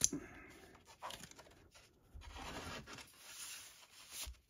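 Paper and card rustling and sliding as printed inserts are handled, after a short sharp click at the very start.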